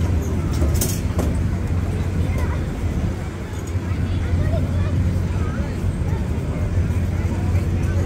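Outdoor fairground ambience: a steady low rumble with faint voices of people in the distance, and a short click about a second in.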